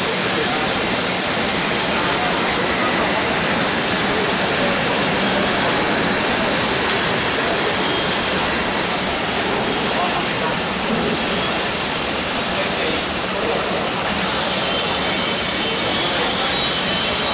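Steady loud roar of foundry machinery, a continuous even noise with a strong high hiss and no breaks.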